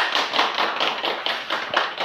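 A small group of people clapping their hands, fast uneven overlapping claps, fading near the end.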